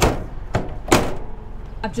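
Roof vent hatch being pushed shut by hand: three sharp knocks in the first second, the last the loudest.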